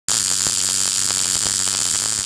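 MIG welding arc running, a steady hiss with a faint crackle and a low hum beneath, starting abruptly just after the start.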